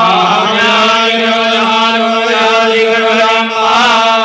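Sanskrit Vedic mantra chanting by male voices, with one long syllable held at a nearly steady pitch.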